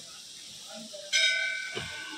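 A metal bell struck once, a little past halfway through, ringing with several clear high tones and fading over about a second.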